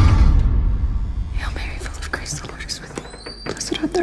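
The low rumble of a deep booming hit dies away, then hushed whispering with no clear words starts about a second and a half in.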